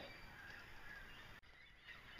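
Near silence, with a faint even hiss of light rain falling on water.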